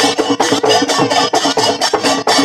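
Laced barrel drums beating a fast, even dance rhythm, with sharp high strokes on each beat and a steady held tone running underneath.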